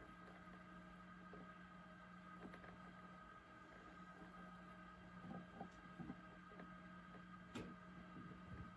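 Near silence: a faint steady hum with a few soft handling sounds of a duck egg being turned over a candling light, and a small click near the end.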